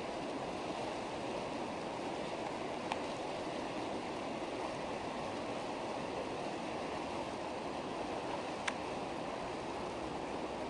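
Whitewater rapids rushing in a steady, even roar. Two brief clicks stand out, about three seconds in and near the end.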